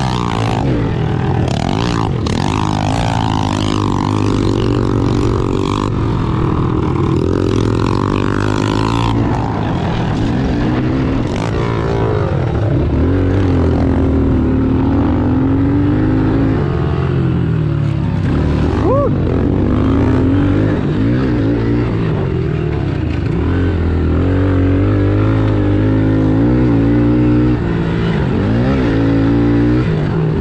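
Honda CRF110 pit bike's small single-cylinder four-stroke engine being ridden hard, its pitch repeatedly rising and falling as the throttle is opened and rolled off. Wind rushes on the microphone over the first several seconds.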